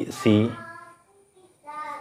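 A man's voice speaking, with a drawn-out, level-pitched syllable in the middle.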